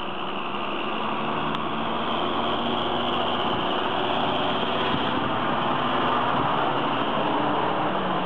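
John Deere tractor engine running steadily as the tractor drives toward the microphone towing a round baler, growing gradually louder as it comes closer.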